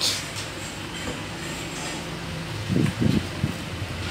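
Steady low hum of a room fan or air conditioner, with handling noise and a few low bumps about three seconds in.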